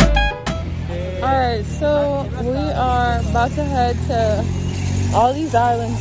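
Music with a beat cuts off about half a second in. Then people talk over a steady low vehicle engine hum.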